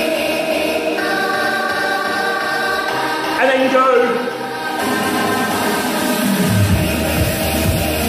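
Workout music with choir-like singing over sustained chords; about six and a half seconds in, a bass-heavy beat comes in.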